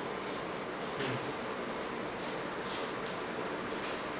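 Open fire burning in a brick homam fire pit, a steady crackling hiss with a slightly louder flare about three seconds in.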